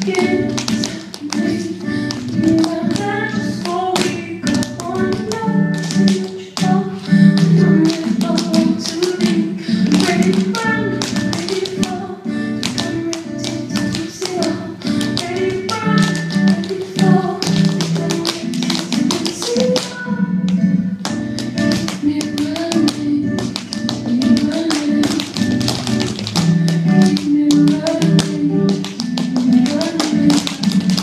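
Dancers' shoes tapping and striking a stage floor in quick rhythms, over a recorded song.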